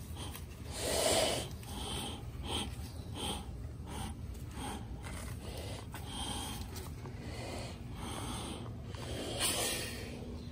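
An Aldabra giant tortoise breathing right at the microphone: a run of short breathy puffs, with a louder one about a second in and another near the end.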